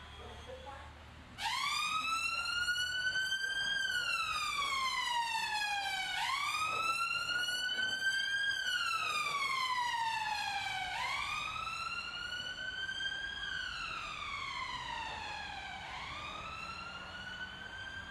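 Emergency vehicle siren sounding a slow wail, rising and falling in pitch about every five seconds. It starts suddenly about a second and a half in, runs through about four cycles, and grows a little fainter near the end.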